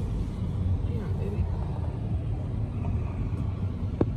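Steady low road rumble of a moving vehicle, heard from inside the cabin.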